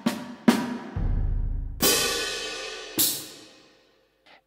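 Sampled orchestral percussion patch from the Vienna Symphonic Library instruments, played back as a demo: two short drum hits, then a deep low boom about a second in, and two cymbal crashes near two and three seconds, the last one dying away.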